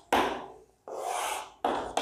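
Chalk writing on a chalkboard: short scraping strokes, then one longer scrape of about three-quarters of a second as the heading is underlined, then another short stroke.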